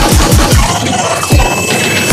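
Dubstep mix music: fast, pitch-dropping kick drums thin out and the deep bass drops away for about a second in the second half, leaving a high held tone and glitchy sounds, a short break before the next section.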